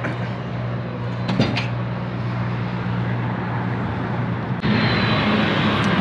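A truck engine idling steadily, with a couple of light clicks, the second about a second and a half in. Near the end a louder rushing noise joins the idle.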